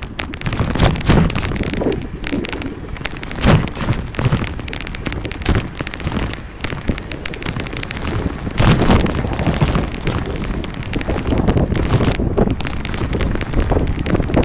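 Wind buffeting the microphone of a camera riding along a paved sidewalk, mixed with rumbling, crackling vibration noise; the loudest gusts come around the middle and near the end.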